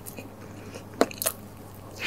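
Close-miked chewing of crispy fried food, with one sharp crunch about a second in and a few smaller crackles after it.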